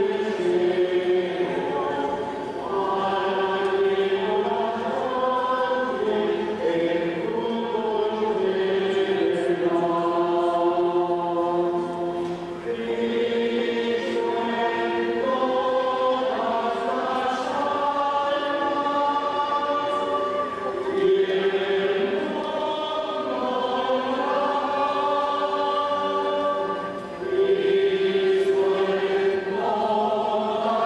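A group of clergy singing a sacred chant together as they walk, a slow melody of long held notes.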